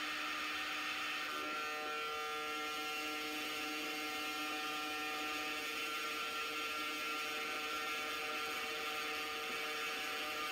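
Ingenuity Mars helicopter test vehicle's counter-rotating rotors spinning inside a vacuum chamber at Mars-like pressure: a steady whirring hum with several held tones over a hiss.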